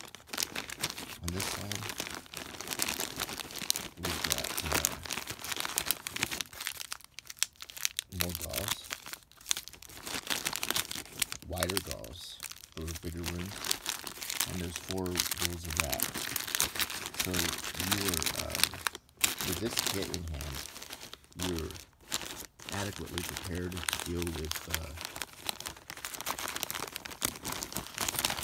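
Clear plastic wrappers and a plastic bag crinkling as hands handle sealed wound dressings and bandage packs in a car first-aid kit, an irregular crackle throughout.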